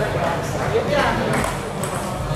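Table tennis ball clicking sharply off paddles and the table during a rally, a few hits in the second half, over the chatter of voices in a busy hall.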